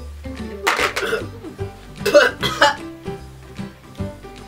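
Background music playing steadily, with two short coughing bursts, about one and two seconds in, from a person whose mouth is full of extremely sour candy.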